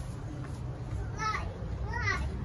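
A young girl's high-pitched voice: a short call a little past a second in, and another starting near the end, over a steady low hum.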